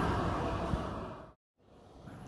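Steady hangar background noise, a rumbling hiss with no clear tone, fading away and cutting to dead silence about a second and a half in, then coming back faintly.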